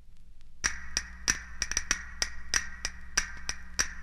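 Percussion opening a folk-rock track: a small struck percussion instrument tapping a quick, uneven rhythm, each strike with a short bright ring, starting about half a second in after a quiet gap.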